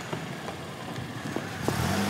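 A car running and driving off past close by, its engine and tyre noise growing louder near the end.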